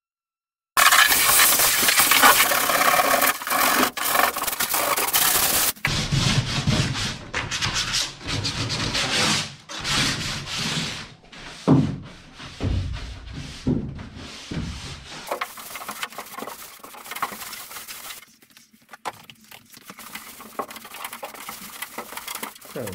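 Electric random orbital sander running on plywood for about five seconds, sanding off cured epoxy fillets, then cutting off. It is followed by a run of uneven rubbing strokes as the sanded hull is wiped down by hand, growing quieter near the end.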